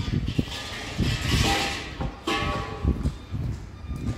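Outdoor street noise picked up while walking with a handheld camera: irregular low thumps throughout, and a swell of hiss from about one to two seconds in, like a car passing on the street.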